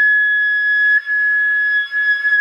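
Concert flute holding one long, steady high G sharp in the third octave (G#6). About a second in, the tone breaks briefly and the note carries on: the change from the covered helper fingering, with the right hand's third and fourth fingers down, to the normal fingering, the note kept sounding.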